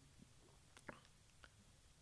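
Near silence: room tone with a few faint, soft mouth clicks, like lip smacks, in the pause before speech.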